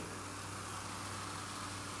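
Faint steady hiss of freshly poured Crystal Pepsi fizzing in a glass, over a low steady hum.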